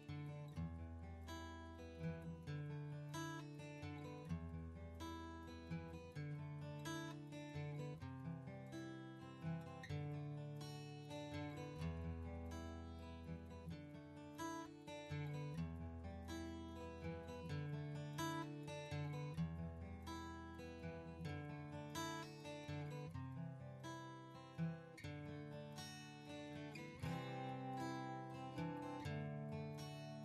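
Background music played on acoustic guitar, a steady run of plucked notes over a low bass line.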